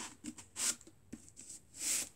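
Cardboard tubes rubbing and scraping as a handmade paper-roll shotgun is handled: two short swishes about a second and a half apart, with a few light taps between.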